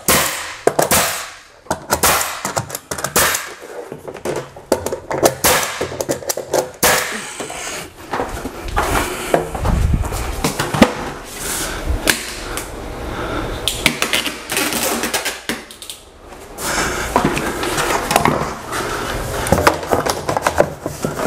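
Ridgid 15-gauge pneumatic finish nailer firing repeatedly as crown molding is nailed up, among knocks and clatter from handling the trim. There is a low rumble around the middle.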